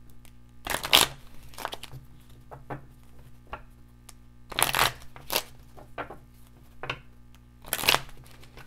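A deck of oracle cards shuffled by hand: a series of short papery bursts, the loudest about a second in, near five seconds, and at the very end.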